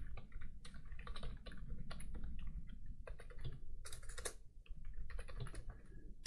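Typing on a computer keyboard: quick, irregular key clicks.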